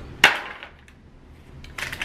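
A metal cookie sheet set down on a tabletop: one sharp clank about a quarter second in that rings out briefly, followed by a few faint clicks of handling.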